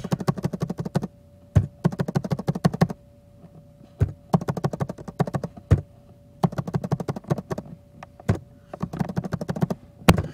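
Typing on a computer keyboard: runs of quick keystrokes broken by short pauses, with a few single keystrokes standing apart.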